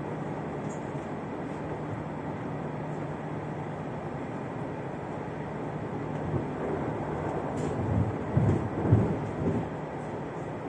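Interior running noise of an X73500 diesel railcar in motion: steady wheel-on-rail noise with a constant low engine hum. Toward the end comes a short run of louder low knocks and bumps, the loudest two about half a second apart.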